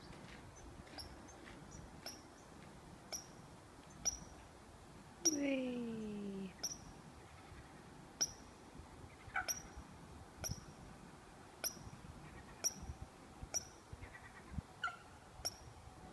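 A bird giving short, sharp, high-pitched calls about once a second. About five seconds in, a person's drawn-out vocal sound falls in pitch for about a second.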